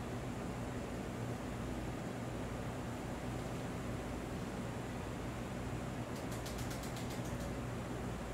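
Steady room noise: an even hiss of ventilation with a low hum under it. About six seconds in comes a quick run of faint, high ticks lasting about a second.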